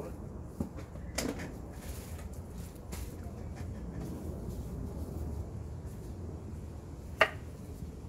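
A few light knocks over a steady low rumble, then one much louder sharp click with a brief ring about seven seconds in.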